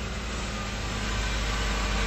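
Car engine idling, heard from inside the cabin as a steady low rumble that grows slightly louder toward the end.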